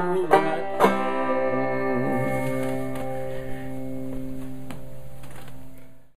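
Banjo playing the last two strums of the tune in the first second, then a final chord left ringing and slowly dying away.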